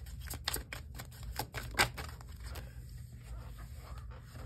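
A deck of tarot cards being shuffled by hand: a quick run of soft card clicks and flicks, busiest in the first two seconds, with one sharper snap about two seconds in, then thinning out.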